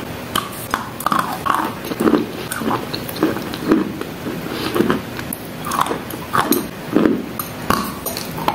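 Close-miked chewing of wet chalk: moist, crunchy chews repeating steadily at about two a second, with small wet clicks of the mouth between them.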